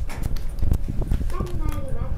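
Irregular dull thumps and knocks, with a voice talking in the second half.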